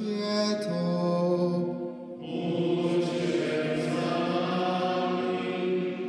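Slow sacred vocal chant with long held notes sung over one another; the harmony moves to new notes about two seconds in.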